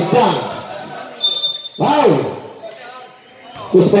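Men's voices calling out on a covered basketball court: three short shouted calls about two seconds apart. A brief, steady, high-pitched tone sounds a little over a second in.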